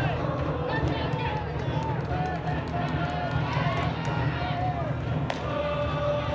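Spectators' voices shouting and cheering at a baseball game, their calls rising and falling in pitch as the batter rounds the bases on a home run, over a steady low rumble. One sharp knock comes about five seconds in.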